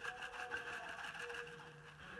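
Red pepper flakes being shaken from a shaker jar into a bowl: a faint, rapid, even rattle of about ten ticks a second that fades away.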